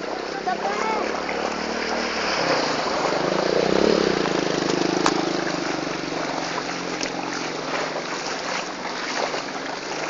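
Floodwater sloshing and splashing on a flooded road, with a motorcycle engine running as it rides through the water, loudest a few seconds in.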